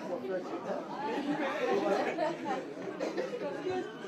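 Chatter of many people talking at once, with no single voice standing out.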